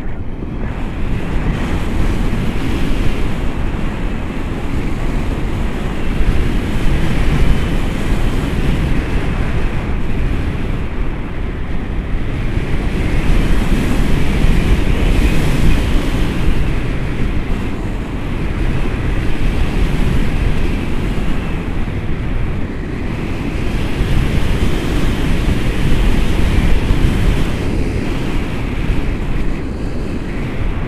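Airflow of a tandem paraglider in flight buffeting the camera's microphone: a loud, steady rush of wind that swells and eases every few seconds.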